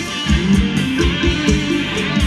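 Thai ramwong dance music from a live band: electric guitar over a steady, fast drum beat.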